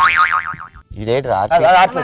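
A comic wobbling 'boing'-style sound effect, its high pitch wavering up and down for just under a second, followed by a man speaking.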